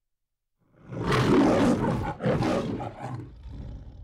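The MGM trademark lion roar. After a short silence a lion roars loudly about a second in, breaks off briefly, roars a second time, then fainter rumbling dies away near the end.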